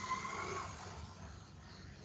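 Faint steady hiss of a video-call microphone, with a faint high tone dying away in the first second and the hiss growing quieter toward the end.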